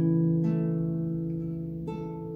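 Classical guitar with a capo, played fingerstyle: a chord is struck at the start and rings on, slowly fading, with a lighter pluck about half a second in and the next chord struck near the end.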